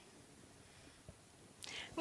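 Almost silent room tone, with a faint click about a second in and a short breath near the end.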